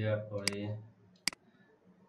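Two sharp computer mouse clicks, the first about half a second in under a few words of speech, the second under a second later.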